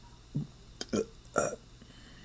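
Three short non-word vocal sounds from a person's voice, spaced about half a second apart.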